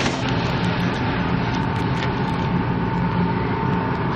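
Wire shopping cart rolling on a store floor: a steady rumble and rattle from the wheels and basket, with a faint steady hum underneath.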